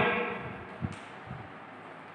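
Chalk writing on a blackboard: a short sharp knock a little under a second in and a softer one after it, over steady room hiss, as the tail of a man's voice fades at the start.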